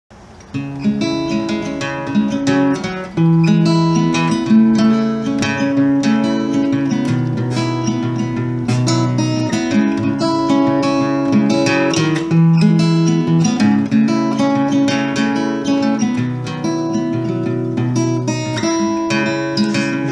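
Solo acoustic guitar playing an instrumental intro, coming in about half a second in and continuing steadily.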